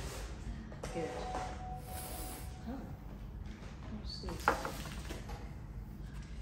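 Faint background voices and room noise, with a short held sung or hummed note about a second in and a single sharp click about halfway through.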